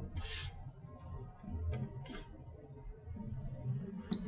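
Marker squeaking on a lightboard's glass as words are written, in a series of short, very high squeaks that come in two clusters, one around the first second and another in the third.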